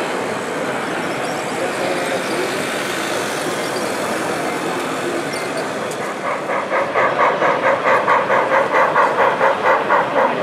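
Steady background noise of a model railway exhibition hall. About six and a half seconds in, a louder pulsing tone starts, at about two and a half pulses a second, and keeps going.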